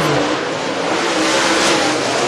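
Super late model dirt track race cars' V8 engines running hard at speed on the track during hot laps.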